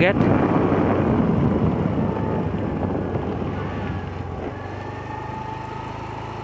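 A road vehicle's engine running while moving, with a rushing noise that is loudest at first and fades over the first few seconds. It settles into a steady low hum with a faint, slightly rising tone near the end.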